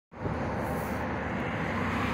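Steady roar of road traffic along a highway.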